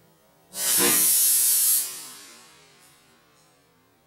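Compressed-air launcher at 120 psig firing a 5 mm bamboo skewer into a black balloon: a sudden loud hiss of escaping air about half a second in, held for over a second and then tailing off as the balloon bursts.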